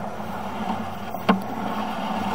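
A steady low mechanical hum with a noise bed, broken by a single sharp click a little past the middle.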